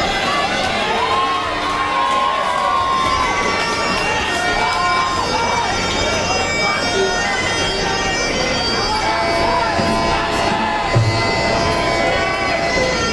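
Thai ring music (sarama), a nasal, bagpipe-like reed melody that glides up and down over the noise of a crowd.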